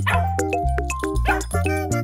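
Upbeat background music with a steady beat, with a dog's short barks over it a couple of times.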